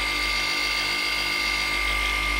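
Cordless random orbital polisher running steadily with its foam pad against a glass panel: a constant motor whine with a high steady tone, holding one speed.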